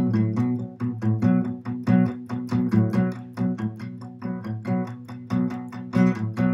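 Steel-string acoustic guitar strummed in a steady rhythm of about four strokes a second on a B minor chord, the strings damped with the back of the strumming hand and lifted off to let the open A string ring.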